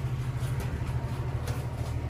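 Steady low machinery drone, even in pitch throughout, with a few light clicks over it.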